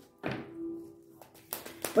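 Tarot cards being shuffled in the hands: a soft thunk about a quarter-second in, then a sharp tap about a second and a half in.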